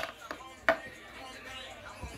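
Two sharp knocks about two-thirds of a second apart, over faint background sound.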